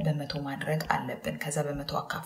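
Speech: a woman's voice talking steadily in Amharic.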